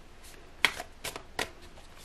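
A deck of tarot cards being shuffled by hand, giving a handful of short, sharp card slaps at an uneven pace.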